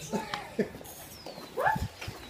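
A dog whining briefly a couple of times, the last whine rising in pitch near the end.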